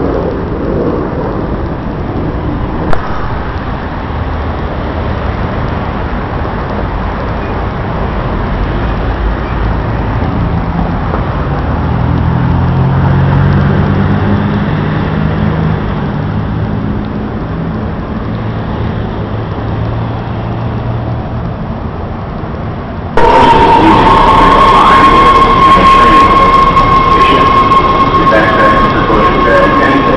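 City street traffic noise, with a vehicle engine hum swelling louder through the middle. About three-quarters of the way in it cuts abruptly to a much louder Washington Metro subway train running in a tunnel, with a rumble and a steady high whine.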